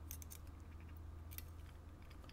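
Faint, scattered metallic clicks of steel tweezers against a brass lock cylinder housing as they reach into its pin chambers.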